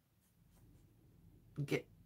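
A pause in a woman's talk: near silence for about a second and a half, with only faint room noise, then she speaks a single word near the end.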